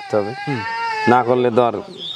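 A brief, high-pitched animal call, about half a second long, heard between a man's words.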